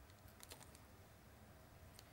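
Near silence, with a few faint, quick clicks about half a second in.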